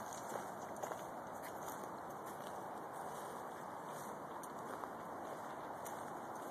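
Footsteps walking along a leaf-littered dirt trail: soft, scattered faint ticks over a steady background hiss.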